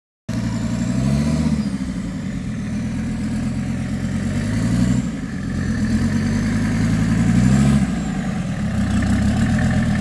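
Mercedes OM617 five-cylinder diesel in a Toyota pickup, crawling off-road at low revs and revved up and back down three times. The sound cuts in suddenly just after the start.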